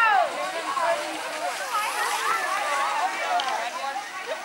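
A group of children's high voices shouting and calling out over one another.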